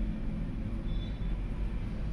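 Steady low background rumble in a pause between spoken steps, with no clear separate strokes or knocks.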